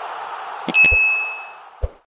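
Subscribe-button animation sound effects: a quick pair of mouse clicks, then a single bright notification-bell ding that rings out and fades over about a second, followed by one more click near the end, over a steady hiss.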